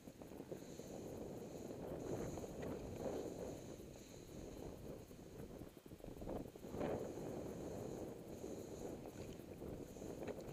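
Steady rushing, swishing noise of travel over snow, swelling and fading in waves and loudest about seven seconds in, with wind on the microphone.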